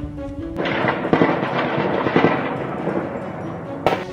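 Background music broken, under a second in, by a loud burst of crackling blast-like noise with heavy bangs about one and two seconds in. A sharp click near the end, then the music resumes.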